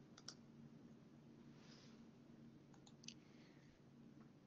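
Near silence: room tone with a faint low hum and a few faint clicks, one about a quarter second in and a small cluster about three seconds in.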